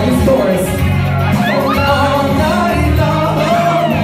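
Karaoke singer's voice over a loud pop backing track with a steady bass beat, played through a bar's sound system.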